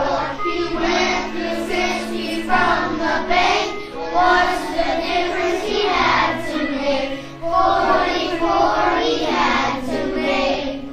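A group of children singing together in unison over a recorded backing track.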